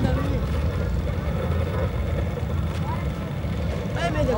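Steady low rumble of wind buffeting the microphone, with faint voices.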